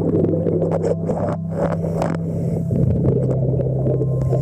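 Underwater sound by a boat's hull as heard through a camera housing: a steady low mechanical hum that shifts slightly in pitch about three seconds in, under a dense rushing, bubbling noise.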